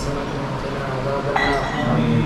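A short ringing clink, like glass or metal struck lightly, about two-thirds of the way in, over low men's voices murmuring in prayer.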